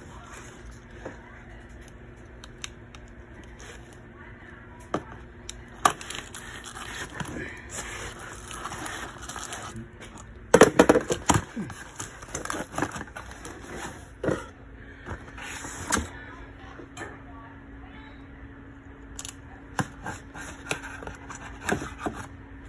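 Cardboard box being handled and cut open: scraping, crackling and tearing of cardboard and tape, with scattered sharp clicks and knocks, busiest about halfway through.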